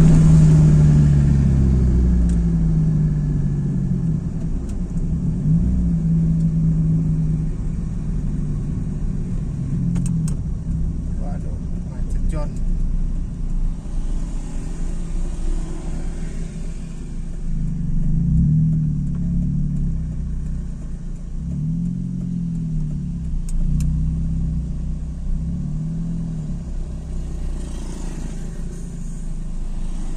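A car's engine and road rumble heard from inside the cabin while the car creeps along in slow traffic. The engine hum falls over the first few seconds as the car slows, then rises and falls several times in the last third as it edges forward.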